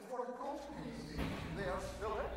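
A man's voice speaking on stage, in short phrases, with a low steady hum coming in shortly after the start.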